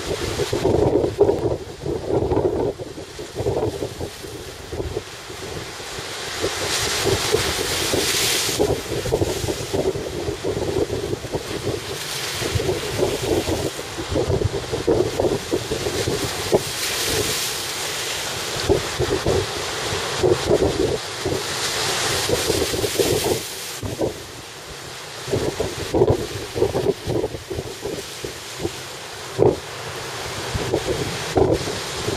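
Rough sea surf breaking and washing over the rocks of a breakwater, swelling in surges every few seconds, with strong wind buffeting the microphone throughout.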